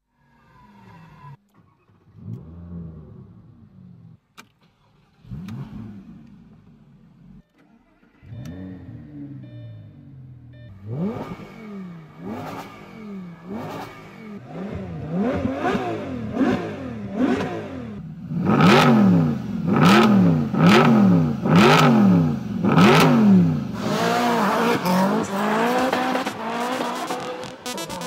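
Opening of an electronic track built on car-engine revving: repeated revs that rise and fall in pitch about once a second. It starts quiet and sparse and grows louder. From about two-thirds of the way in each rev comes with a sharp hit, and denser music takes over near the end.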